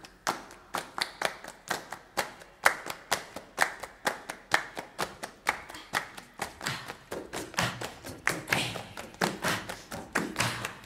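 A group clapping hands in a steady rhythm, about three claps a second, with no singing. From a little past the middle, deeper thuds join in under the claps.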